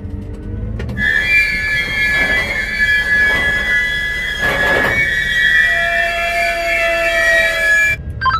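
Steel wheels of a train of railway dump cars squealing as it rolls, several high steady screeching tones held together with swells of grinding noise. Before that, about the first second is a low engine rumble.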